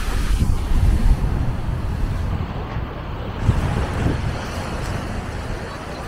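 Wind buffeting the microphone in gusts, with small waves washing onto a sandy shore underneath. The gusts are strongest about a second in and again around three and a half seconds.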